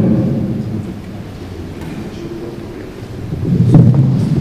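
Handling noise of a handheld microphone being passed from one person to another: low rumbling and rubbing from hands on the mic body, swelling again with a knock near the end as it is taken.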